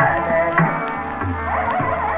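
Hindustani classical music in Raga Kamode: a steady buzzing drone under a sliding melodic line, with deep tabla strokes about every half second.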